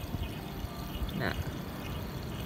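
Water running steadily out of an open PVC pipe and splashing onto a concrete floor and over a fabric face mask held in the stream.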